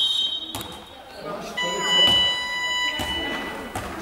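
A referee's whistle ends a moment in, then about 1.6 seconds in an electronic game buzzer sounds a steady tone for about a second and a half as play is stopped.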